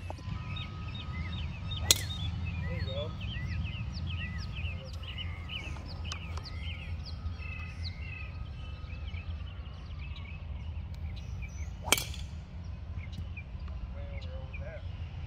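Small birds chirping throughout over low wind rumble, with two sharp club-on-ball strikes: one about two seconds in, and a driver hitting a golf ball off the tee near the end.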